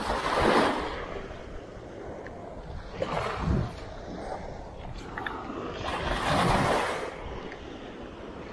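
Small waves washing up on a sandy beach, three swells of surf about three seconds apart.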